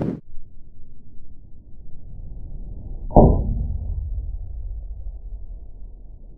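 Slowed-down audio of a golf shot with an 8 iron: a low, dull rumble, then about three seconds in a single deep, pitched-down strike of the club on the ball and turf that dies away over about a second.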